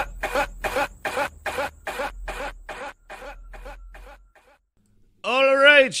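A man laughing in short breathy bursts, about four a second, that fade away over some four seconds. A man's voice starts near the end.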